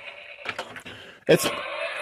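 A battery-powered Power Rangers zord toy's small electric motor whirs faintly and dies away about half a second in. A few sharp plastic clicks follow as its hinged chest and head parts are pressed shut by hand.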